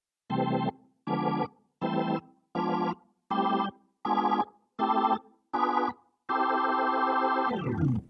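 Nord Stage 3 keyboard playing a Hammond B3-style drawbar organ sound: eight short, evenly spaced block chords walking up the scale, alternating C6 and diminished chords, then a longer held chord whose pitch dips as it ends.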